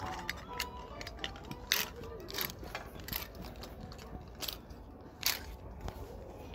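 Shop ambience: faint background music and distant voices, broken by scattered sharp knocks and thumps, the strongest about a second and a half, two and a half, four and a half and five and a half seconds in.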